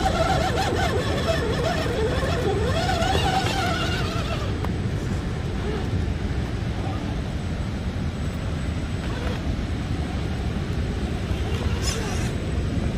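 Electric motor and gears of a Redcat Gen7 RC rock crawler whining, the pitch wavering up and down for about the first four seconds, over a steady low rumble.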